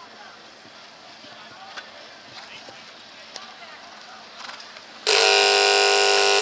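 Arena buzzer sounding one loud, steady, harsh tone, starting suddenly about five seconds in. Before it, faint crowd voices.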